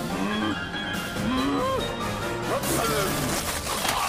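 Cartoon soundtrack music with swooping, sliding tones, building to a loud crashing splat near the end as a burst of slime hits.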